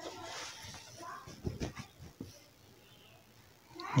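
Faint rustling of printed dress fabric being handled and spread out, with a few soft knocks about a second and a half in.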